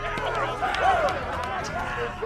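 Several men cheering together, their overlapping shouts running through the whole moment.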